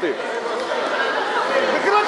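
Background chatter of many voices, echoing in a large sports hall.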